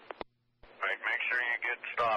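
Railroad radio chatter heard through a scanner: a thin, narrow-sounding voice transmission. It opens with two sharp clicks and a brief silence, and the talking starts just over half a second in.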